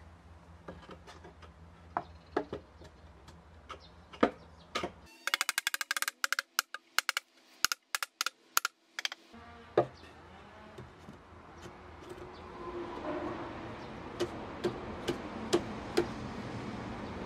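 Scrap wooden formwork boards knocking and clattering against each other and the concrete floor as they are handled and set in place. Sharp knocks come singly at first. From about five to nine seconds in there is a dense run of quick clicks and knocks, then a few more spaced knocks.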